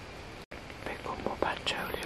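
A person whispering in a hushed voice, starting about a second in, over a steady background hiss. The sound drops out completely for a moment about half a second in.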